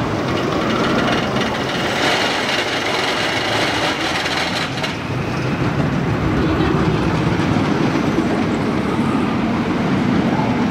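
Joris en de Draak's wooden roller coaster train rolling over its wooden track, a continuous rumble that grows louder after about six seconds.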